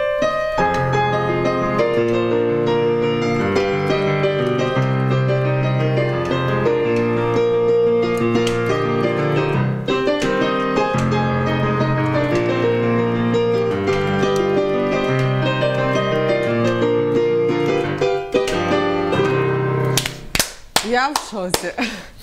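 Digital stage piano playing a pop-song melody over a steady left-hand bass and chords. The playing stops about two seconds before the end, and voices follow.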